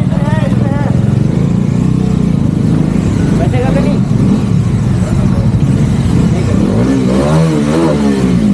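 A motorcycle engine running steadily under way, with brief voices over it.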